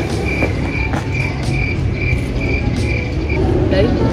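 An insect chirping in a fast, even rhythm of about four short high-pitched chirps a second, all at one pitch, stopping shortly before the end, over a steady low traffic rumble.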